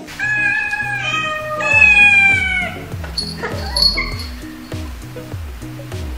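Domestic cat meowing in long, drawn-out calls: three in quick succession, then a fainter one about four seconds in, over background music with a repeating bass line.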